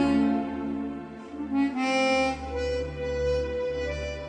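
Jazz chromatic harmonica playing a slow ballad melody in a few long held notes, over a low bass accompaniment.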